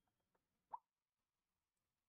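Near silence: room tone with one faint, brief pop a little under a second in.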